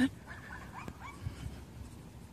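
A dog whimpering faintly, with a few short rising whines in the first second.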